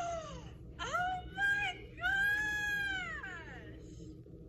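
A woman's high-pitched squeals of surprise coming through a phone's speaker on a video call: a short squeal, two quick ones, then a long drawn-out squeal that rises and falls in pitch.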